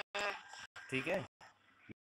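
Speech only: a voice talking over a video call, broken by brief, abrupt dropouts.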